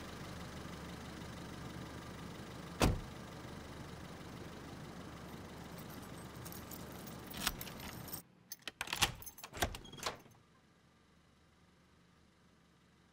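A taxi's engine idling steadily in the street. A car door shuts with a single thump about three seconds in. Near the end comes a quick run of light clicks and rattles at a front door, and then the sound falls to near silence.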